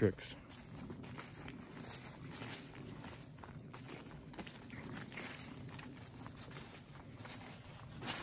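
Footsteps through tall grass and weeds, soft and irregular, with the plants swishing against the legs.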